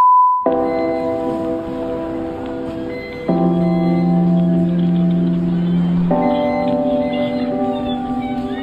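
A steady, high test tone that cuts off about half a second in, followed by background music of sustained, held chords that change about every three seconds.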